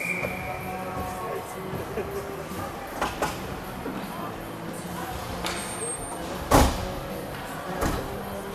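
Ice rink during a stoppage in play: voices and background music, a few knocks, and one loud sharp bang about six and a half seconds in, such as a stick or puck striking the boards or glass.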